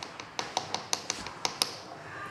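A thin glass rod clinking against the neck of a small glass reagent bottle: a quick, irregular run of about a dozen light clicks that stops shortly before the end.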